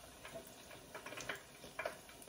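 Faint, irregular clicks and crackles from fish balls frying in an electric deep fryer while a metal utensil works in the oil, with a slightly louder cluster of clicks near the end.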